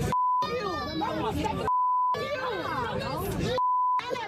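Three short steady censor bleeps, each blanking out a word of a woman's shouted profanity, with her shouting and other voices in between.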